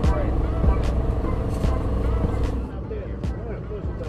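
Busy city street noise: a steady low rumble of traffic and engines, mixed with background music and voices.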